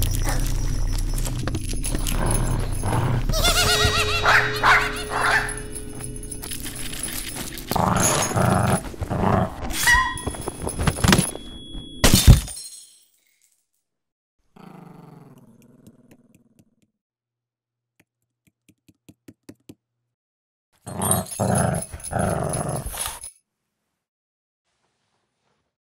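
Scottish terrier barking and growling in a cartoon soundtrack, mixed with music and sound effects. The sound cuts off suddenly a little past halfway, leaving only a faint sound and a few soft ticks, then a short loud burst of noise comes near the end.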